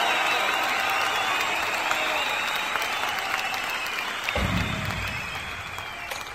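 Audience applauding, a dense patter of claps that slowly fades; a low rumble comes in about four seconds in.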